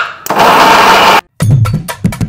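Kitchen mixer grinder running loud at full speed for about a second, cut off abruptly. After a short silence, music with a fast clicking percussive beat starts.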